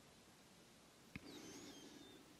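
Near silence in a pause between spoken sentences, broken by one faint click a little past halfway and a few faint high squeaks after it.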